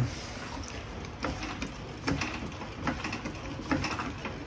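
Quiet handling noise: a few scattered light clicks and knocks over a low steady room hum.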